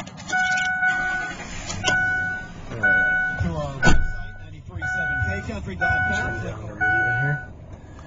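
A pickup truck's dashboard warning chime sounding over and over, a steady two-note electronic tone repeating about once a second, each tone lasting around half a second. A sharp click comes about four seconds in.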